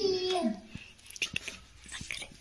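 A young child's long, held vocal sound that drops in pitch and ends about half a second in, followed by faint light taps and handling noises.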